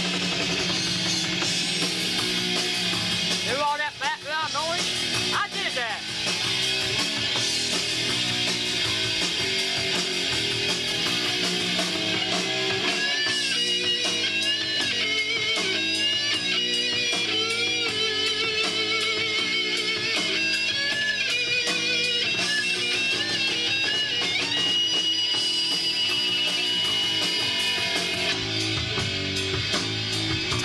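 Les Paul-style electric guitar playing a lead over other music, with many bent and wavering high notes.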